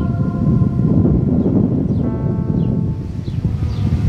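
Background music of held keyboard chords over a heavy low rumble.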